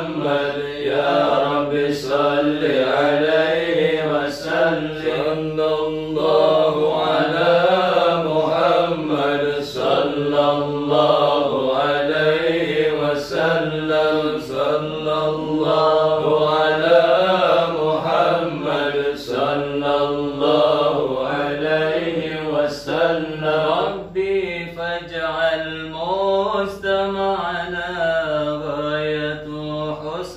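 Men's voices chanting a sholawat, a slow melodic Arabic invocation of blessings on the Prophet Muhammad, held on without a break.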